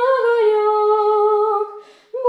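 A female voice singing unaccompanied, holding a long wordless note that steps down a little in pitch. The note fades out near the end, where a short breath is taken.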